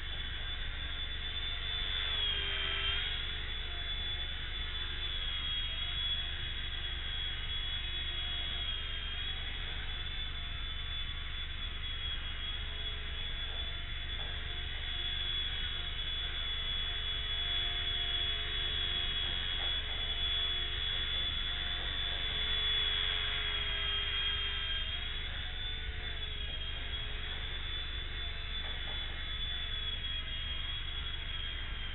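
Xieda 9958 micro RC helicopter in flight: a steady high electric-motor whine with rotor hum. The pitch dips briefly about two and a half seconds in and again near twenty-five seconds as the motor speed changes. A low steady hum runs underneath.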